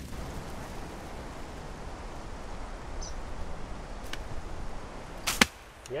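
A steady low rumble as a flock of sheep runs across grass. About five seconds in comes one loud, sharp chop of a hand blade into a hedge stem.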